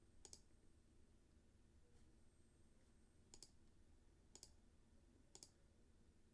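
Faint computer mouse clicks over near silence: four single clicks, one near the start and three evenly spaced about a second apart later on.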